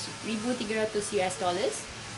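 A woman's voice speaking, over a steady faint background hiss.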